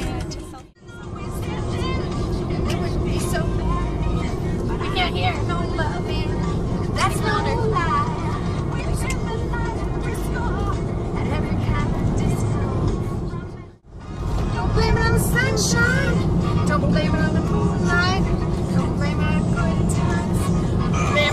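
Steady road and engine rumble inside a moving car, with music and scattered voices over it. The sound drops out briefly twice.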